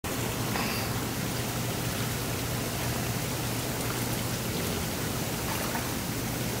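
Hot tub jets running: aerated water churning steadily, with a steady low hum underneath.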